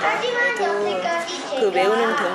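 Speech: a woman talking, with children's voices chattering behind her.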